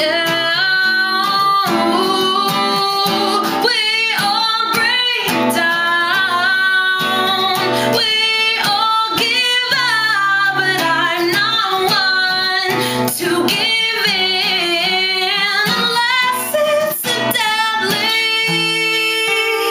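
A woman singing, accompanying herself on a strummed acoustic guitar, with long held, wavering sung notes over the chords.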